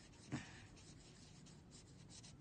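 Faint felt-tip marker scribbling on paper as a child colours in a worksheet, in short rubbing strokes. A brief soft thump stands out about a third of a second in.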